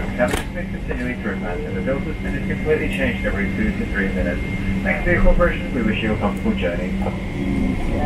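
Indistinct talking in an airliner cabin over a steady low hum from the cabin air system, with the aircraft under pushback and its engines not yet started.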